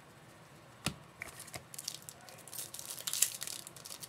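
A single knock about a second in, then the wrapper of a baseball card pack crinkling and tearing as it is opened, in quick crackly bursts through the second half.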